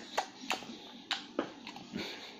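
A child chewing a mouthful of soft mango, with about five short, wet mouth clicks.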